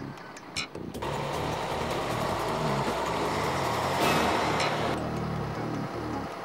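A truck engine runs steadily. It comes in about a second in and carries on with a low rumble.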